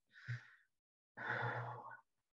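A man sighs while pondering a question: a short breath near the start, then a longer voiced sigh from about a second in.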